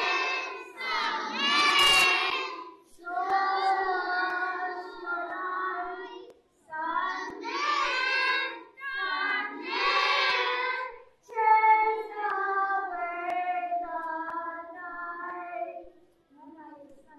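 A high voice singing a slow melody in five phrases with short breaths between, the last phrase long and stepping down in pitch.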